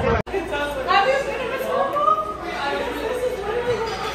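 Chatter of several voices in a large indoor room, after a sudden split-second dropout near the start where the video cuts.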